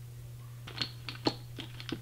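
A quick run of small, sharp clicks and taps, several a second, starting under a second in, over a steady low electrical hum.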